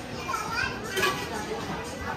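A child's high voice calling out over the chatter of a crowded dining room, with a sharp click about a second in.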